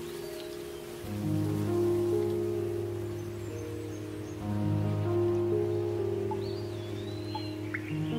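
Slow ambient meditation music: long sustained chords, with a deep bass note swelling in about a second in and again midway, over a soft hiss. A few faint high chirps come near the start and the end.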